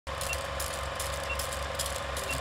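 Old film projector sound effect: a steady mechanical whir with crackle and a low hum, and a short high beep twice, about a second apart.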